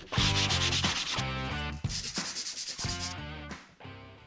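Scratchy rubbing, as of hand sanding, in two stretches of about a second each, the first just in and the second about two seconds in, over guitar-led background music that fades near the end.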